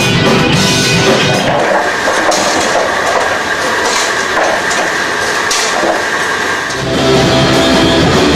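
Live rock band music with guitar and drums. A couple of seconds in, the low end drops away and a thinner, noisier passage with one held high tone takes over, then the full band comes back in near the end.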